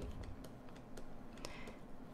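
Faint, scattered light clicks and taps of a stylus on a tablet while numbers are handwritten.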